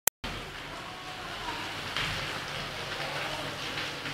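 Heavy thunderstorm rain pouring down, a steady hiss, picked up by a phone's microphone. A short click at the very start.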